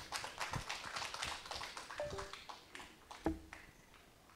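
Thin, scattered audience clapping that dies away over about three seconds, with one louder knock a little after three seconds in.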